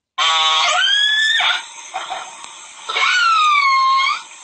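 Whale calls: two long pitched calls, the first rising in pitch and the second falling, with fainter sounds between them.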